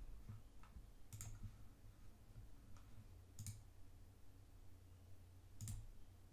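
Near silence with three faint clicks about two seconds apart, from a computer mouse, over a low room hum.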